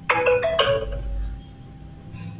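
A short electronic chime of a few stepped notes, lasting about a second and then fading.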